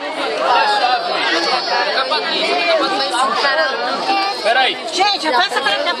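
A crowd of many people talking at once, their voices overlapping without a break.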